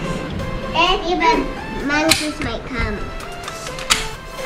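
Young children's voices talking and calling out over background music, with a single sharp click near the end.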